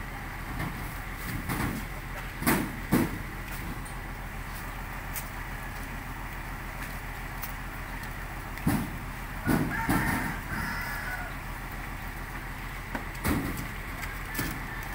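Heavy sacks of grain being dropped onto a truck's cargo bed: a series of dull thumps, in pairs and singly, over a steady low hum.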